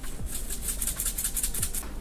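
Sesame seeds shaken from a container into a stainless steel bowl, a rapid, even rattle of quick shakes, several a second.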